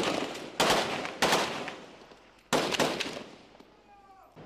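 Gunshots: four separate shots within the first three seconds, each a sharp crack followed by a long echoing tail.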